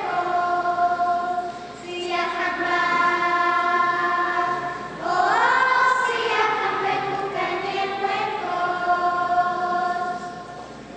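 Children's choir singing long held notes in phrases, with a brief dip about two seconds in and a louder phrase that rises in pitch about halfway through.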